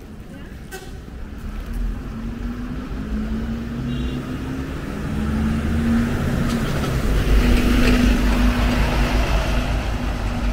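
Double-decker bus pulling past at close range, its engine running with a steady hum and a low rumble, growing louder and loudest near the end.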